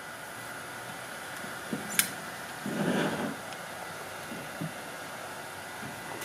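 A tablet being set into the spring clamp of a tablet mount on a drone remote controller: a sharp click about two seconds in, a soft muffled handling sound a second later and a few light ticks, over steady room hiss.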